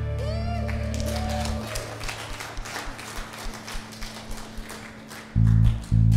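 A worship band's final held chord dies away, followed by scattered hand clapping from the congregation. About five seconds in, the band launches into the next song with loud, evenly repeated bass guitar notes.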